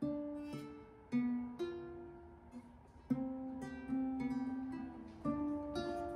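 Small acoustic guitar played by hand: a slow melody of single plucked notes, about nine in all, each left to ring and fade before the next.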